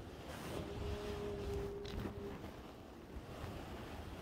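Rumbling, rustling noise of a covered microphone being rubbed or shifted, with a faint steady tone lasting about a second and a half, starting a little under a second in.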